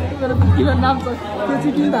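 Several people chatting and talking over one another at close range, with a steady deep hum coming and going underneath.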